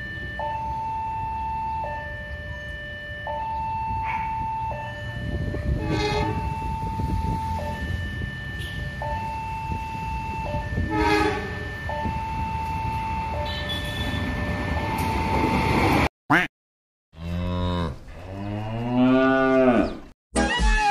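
Railway level-crossing warning alarm sounding an alternating two-tone ding-dong, about one change every second and a half, while the low rumble of an approaching train grows louder. Near the end, after a brief silent cut, a cow moos loudly.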